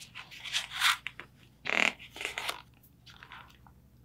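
Paper rustling and crinkling as the pages of a picture book are turned, in several short bursts.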